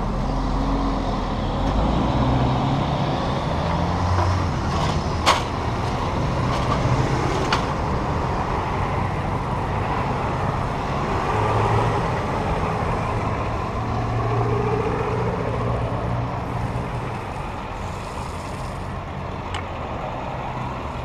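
A motor vehicle engine running steadily with a low rumble, with a sharp click about five seconds in.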